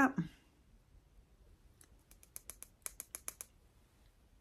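A makeup brush clicking against a mini eyeshadow palette as eyeshadow is picked up: a quick run of about a dozen light clicks in the second half.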